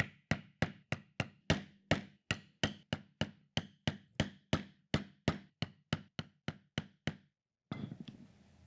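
A mallet striking a stitching chisel to punch stitching holes through leather wallet panels. The knocks are sharp and steady, about three a second, and they stop shortly before the end.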